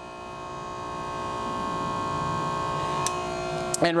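Pressure washer running with a 40-degree nozzle fitted: a steady motor hum under a rushing spray that grows gradually louder over the first few seconds and then holds.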